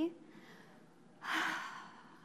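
A woman's weary sigh into a microphone: one breathy exhale that starts a little past a second in and trails off.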